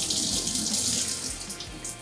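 Water running from a shower mixer tap and splashing over a head and face as shampoo is rinsed off. The flow is loudest over the first second, then thins out and stops near the end, with a faint music beat underneath.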